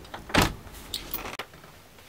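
Door being opened by its round knob: a sharp knock of the latch or door about half a second in, then a few lighter clicks.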